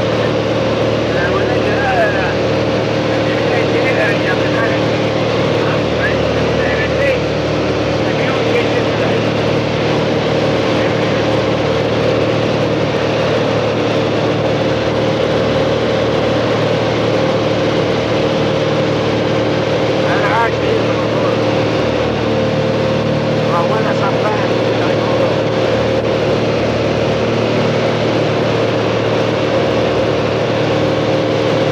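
Light aircraft's engine and propeller droning steadily in flight, heard from inside the cabin, with a steady hum of several fixed tones.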